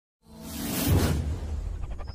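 Logo-animation sound effect: a whoosh that swells up out of silence and peaks about a second in with a deep boom, then fades under intro music.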